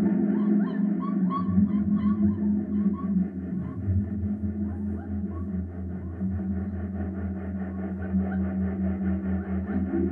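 Live experimental electronic music played on a laptop and touch tablet: layered sustained low drones, with short chirping glides repeating over the first half and a pulsing low tone that comes in about a second and a half in.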